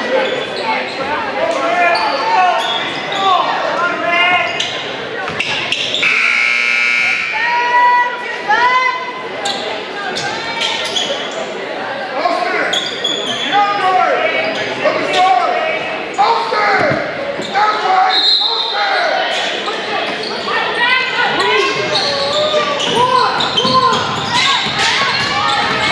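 Basketball game sounds in a large gym: a ball bouncing on the hardwood court and players and spectators shouting and talking, all with hall echo. About six seconds in, a scoreboard horn sounds for about a second.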